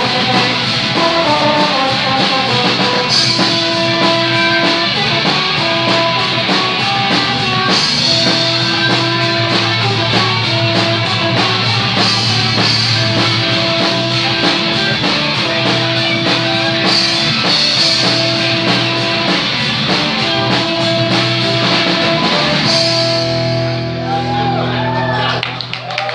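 Live rock band playing loud: electric guitars, bass and a drum kit with repeated cymbal crashes. Near the end the rhythm stops and a final held chord rings out.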